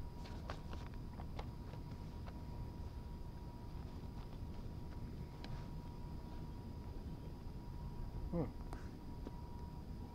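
A man drawing on a corn cob pipe, with a few soft mouth clicks in the first second and a half and another about five and a half seconds in. Under them runs a steady low outdoor rumble and a thin steady high tone. He gives a short 'hmm' near the end.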